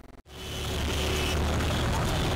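Outdoor street ambience with a steady low rumble like road traffic. It cuts in abruptly about a quarter second in, after a brief silence.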